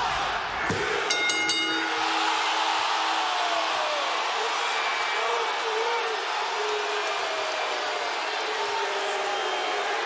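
Large arena crowd cheering. About a second in, a wrestling ring bell is struck rapidly several times, signalling that the match's time limit has expired.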